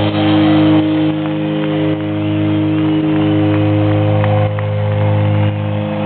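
Live hard rock band, loud: distorted electric guitars and bass holding a sustained, droning chord, heard from the audience in a large arena.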